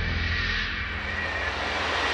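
Build-up in a dark electronic music mix: a sustained whooshing noise swell, its filter opening upward over the second half, with a faint steady high tone, leading into a drop.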